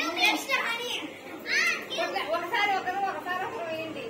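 Children's voices talking and calling out, with one high call about a second and a half in.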